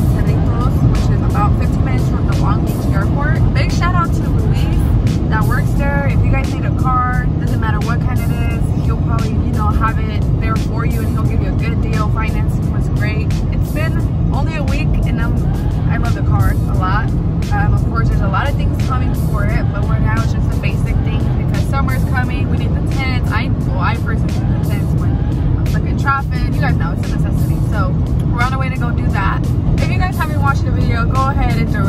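Steady road and engine drone of a car driving on the highway, heard from inside the cabin, under a woman's voice and music.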